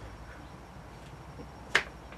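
A single sharp click about three-quarters of the way through, over faint room tone.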